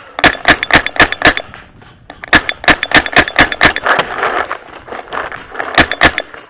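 Paintball markers firing: a quick string of shots at about five a second, a pause of about a second, a second string, then a few scattered single shots.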